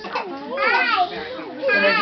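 A toddler's high-pitched wordless vocal sounds: two short rising-and-falling calls, one about half a second in and one near the end.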